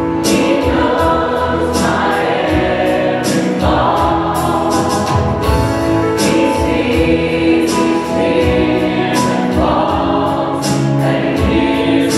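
Church choir and praise band performing a worship song: many voices singing together over acoustic guitars, piano and a drum kit keeping a steady beat.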